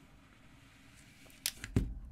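Plastic card squeegee pushing out a film screen protector on a phone: a faint rub at first, then two sharp clicks near the end as it comes off the phone.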